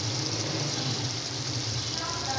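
Chicken keema frying in a steel karahi, a steady sizzle over a constant low hum.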